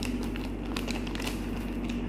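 Clear plastic packaging bag crinkling lightly as it is handled, over a steady low hum.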